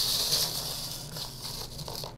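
A hissing, rushing sound effect for an animated logo, with a few light clicks in its second half.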